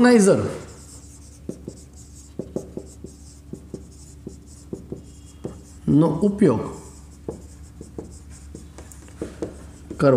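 Marker pen writing on a whiteboard: a run of short strokes and scratches as words are written out.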